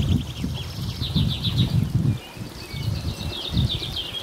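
Small birds singing in rapid, high trills, over uneven low rumbling on the microphone.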